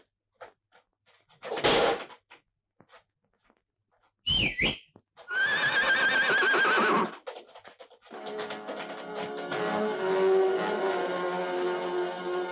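A horse whinnying: a short high squeal about four seconds in, then a long wavering call lasting nearly two seconds. Film-score music comes in about eight seconds in, after a brief noisy burst near two seconds.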